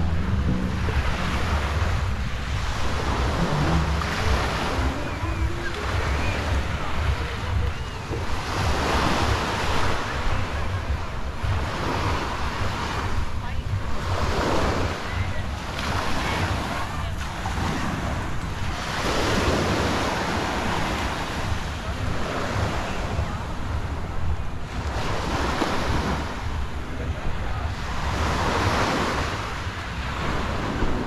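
Small surf breaking and washing up the beach, the hiss swelling and falling every few seconds, with wind buffeting the microphone as a steady low rumble.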